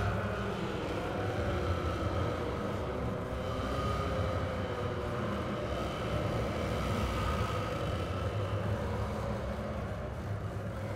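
Dark ambient music: a steady low rumble with faint sustained tones drifting slowly above it, with no beat and no voice.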